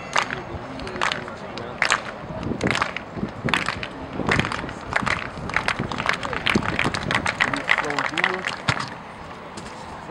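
Spectators and athletes clapping together in rhythm to cheer a jumper on his run-up, slow at first, about one clap a second, then quickening to fast clapping about halfway through, with voices calling underneath.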